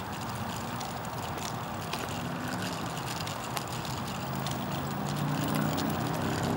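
Stroller wheels rolling over asphalt, a steady rumble with many small clicks and rattles. From about two seconds in, a low vehicle engine hum grows louder toward the end.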